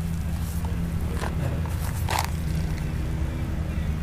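Steady low hum of a running motor, with two faint clicks about one and two seconds in.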